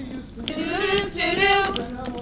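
Young voices singing together, a held phrase that begins about half a second in and runs until near the end.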